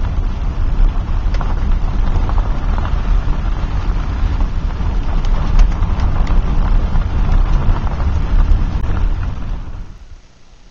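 Wind buffeting the camera microphone: a loud, fluctuating rumble with a few faint ticks, cutting off near the end.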